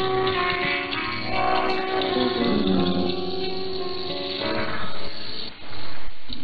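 Instrumental interval music on a shortwave broadcast of Radio Thailand's Japanese service, received on 9390 kHz, sounding narrow and muffled. The music gives way to noise about four and a half seconds in.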